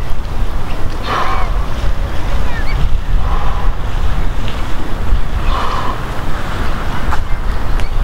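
Wind buffeting the camera microphone, a steady loud low rumble. Three brief fainter, higher sounds come about two seconds apart.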